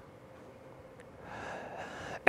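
Faint line hiss with a small click about a second in, then a man's audible in-breath through the microphone over the last half-second or so before he speaks.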